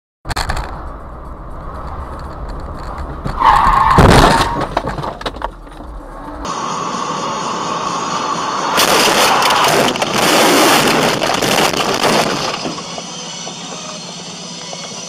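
Dashcam recordings of car crashes: low road rumble, a brief horn-like tone, then a loud crash about four seconds in. After a cut, a second, longer burst of loud collision noise lasts from about nine to twelve seconds in.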